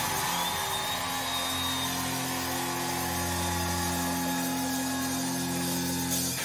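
Highland bagpipes and a rock band holding one long, steady chord over the pipes' unchanging drones.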